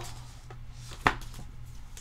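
Hands handling a cardboard album and its paper inserts, quiet rustling with one sharp tap about a second in and a lighter one just before it.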